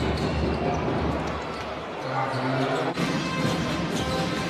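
Live basketball game sound in an arena: a basketball bouncing on the hardwood court over crowd noise. The sound breaks off abruptly about three seconds in as the footage cuts to another play.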